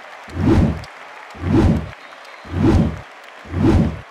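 Slow, regular deep drum beats, five booms about a second apart, each with a short reverberating tail over a faint hiss.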